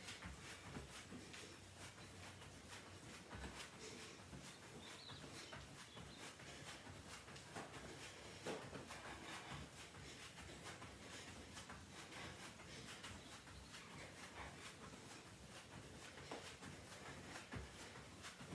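Faint, repeated soft thuds of feet landing on an exercise mat during jumping jacks, with little else above room tone.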